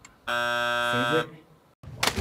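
Countdown-timer buzzer sounding once, a flat electronic buzz of about three quarters of a second, marking that the time to answer has run out.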